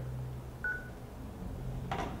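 A single short electronic beep from a mobile phone, like a keypad tone, lasting about a quarter of a second, over a low steady room hum; a click comes near the end.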